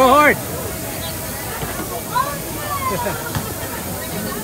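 Background hubbub of voices over a steady haze of outdoor noise, with a short, loud, high-pitched vocal sound right at the start and a couple of brief voice sounds about halfway through.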